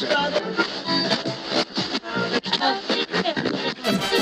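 Upbeat instrumental background music with a quick, busy beat; a fuller section with deep bass comes in near the end.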